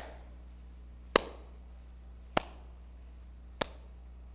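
Slow hand claps, sharp and evenly paced, about one every second and a quarter.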